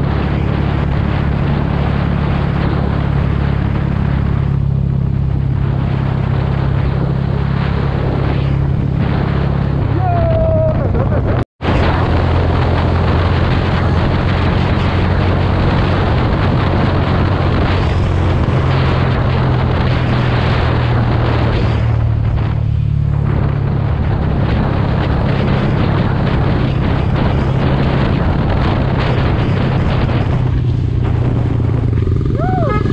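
Mahindra Mojo 300's single-cylinder engine running steadily at cruising speed under heavy wind rush over the rider's camera microphone. The sound drops out completely for an instant about a third of the way through.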